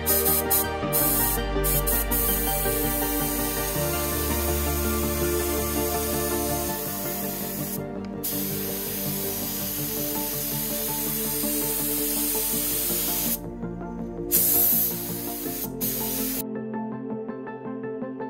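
Gravity-feed air spray gun hissing as it lays on black paint, in long trigger pulls. There is a brief break about eight seconds in and a longer one a few seconds later, and the spraying stops a second and a half before the end. Background music plays underneath.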